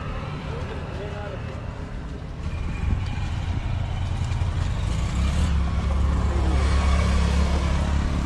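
A motor vehicle on the road, a low engine hum that grows steadily louder from about three seconds in as it comes close, under faint voices.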